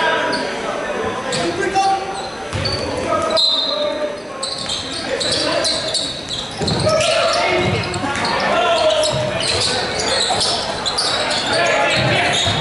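Live basketball game sounds in a large gym: the ball bouncing on the hardwood court amid people's voices talking and calling out in the hall.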